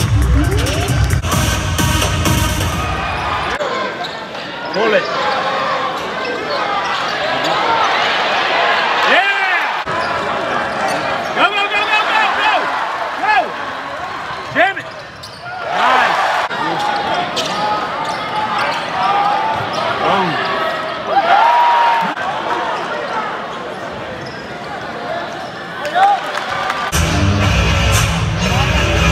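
Live college basketball heard from the stands: the ball bouncing and sneakers squeaking on the hardwood over crowd chatter. Arena music with a heavy bass beat plays for the first few seconds and comes back near the end.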